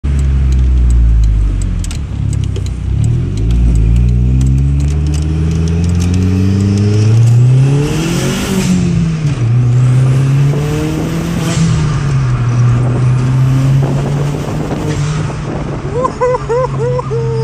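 Volkswagen Jetta fitted with a K04 turbocharger, accelerating hard through the gears, heard from inside the cabin. The engine's pitch climbs in three pulls and falls at each shift. A thin turbo whistle rises with each pull, and a burst of hiss comes at each shift.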